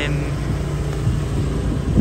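Low, steady rumble of a motor vehicle engine running nearby, with no change in pitch.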